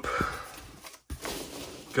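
A hand rummaging through a box of foam packing peanuts, a dry rustling, with a breathy exhale at the start and a brief break about halfway.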